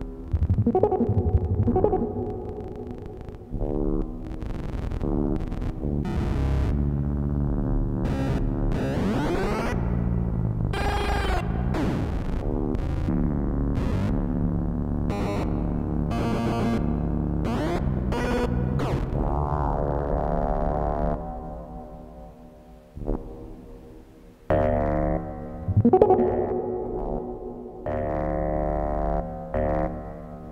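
Buzzy electronic tones from an Emona TIMS trainer's PCM encoder and decoder modules as the encoder clock is played with. Pitches sweep up and down in curving glides, broken by sharp clicks. The sound fades out for a few seconds past the middle, then comes back loud near the end.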